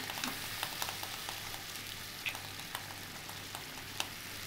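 Green-paste gravy with vegetable pieces sizzling in oil in a kadai, with a steady hiss and many small crackling pops. A steady low hum runs underneath.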